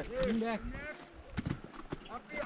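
A shouted call of "Right", then a few sharp taps about a second and a half in, from ice axe picks and crampon front points striking the ice wall.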